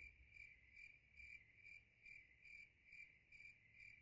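Very faint cricket chirping: one high tone pulsing in even chirps about two to three times a second.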